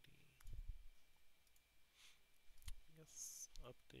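A few scattered computer mouse clicks, quiet and sharp, with a short high hiss about three seconds in.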